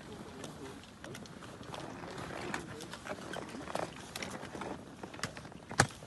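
Faint, indistinct voices and room noise, broken by scattered small clicks and knocks. One sharp knock comes near the end.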